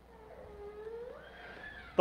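A baby's faint, whiny cry, one drawn-out wail that rises in pitch near the end.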